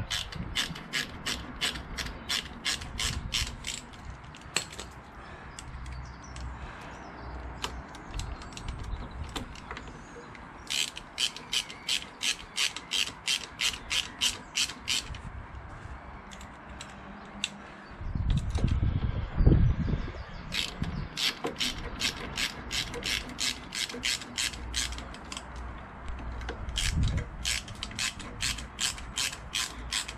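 A socket ratchet clicks in runs of about four clicks a second as it winds the clutch spring bolts into a motorcycle clutch pressure plate, pausing between bolts. A low thud and rumble comes between about 18 and 20 seconds in and is the loudest sound.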